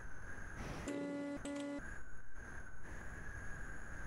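Steady hiss and rumble of an open microphone on a video call, with two faint steady high whines. About a second in, a short snatch of music with held notes cuts in and out.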